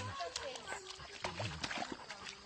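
Golden retriever wallowing in a muddy puddle: wet sloshing and squelching of mud and water, a run of short irregular splashes, under a person's voice.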